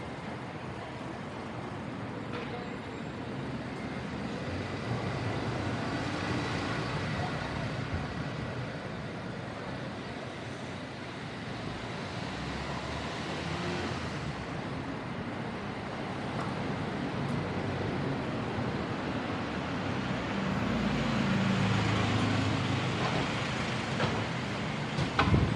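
City street traffic noise from cars and buses passing on the road, rising and falling as vehicles go by. It is loudest near the end, as a double-decker bus comes alongside.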